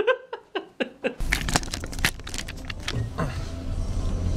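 A brief laugh, then from about a second in the steady low rumble of a car heard from inside the cabin, with scattered clicks and knocks over it.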